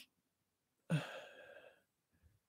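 A man sighing once, a short breathy exhale about a second in that starts strongest and fades out within about a second.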